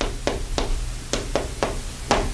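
Chalk tapping and scratching on a blackboard as an equation is written: a quick series of sharp taps, about four a second.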